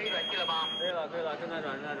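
Men talking, with a steady high-pitched electronic beep that lasts about a second at the start and then cuts off.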